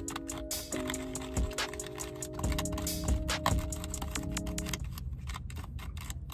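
Rapid clicking and scraping of a small plastic spoon in a plastic candy-kit tray as candy powder is mixed with water, over background music with held chords that stop about five seconds in.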